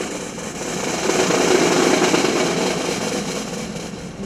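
Military band side drums playing a sustained roll that swells over the first second and a half and then eases off, the lead-in to a national anthem.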